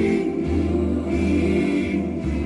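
Music: a choir of voices singing over a low, steady drone.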